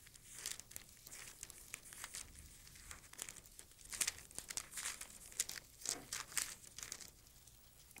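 Thin Bible pages being leafed through by hand: faint, irregular paper rustling and crinkling of quick page turns, busiest a few seconds in.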